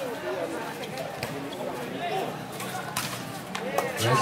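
Crowd of spectators talking and calling out at a volleyball match, with a few sharp smacks of the ball being played in a rally, clearest about a second in and around three seconds in. The crowd grows louder near the end.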